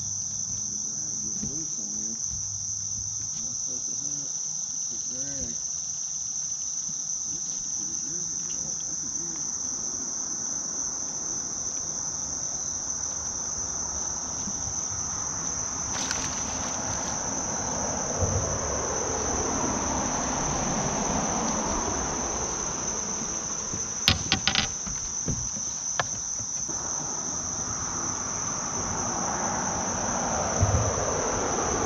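A steady high-pitched insect chorus from the shoreline trees. About halfway through, a hooked bass splashes at the side of the boat as it is brought in, followed by a few sharp knocks.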